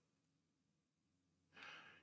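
Near silence, with a faint intake of breath near the end.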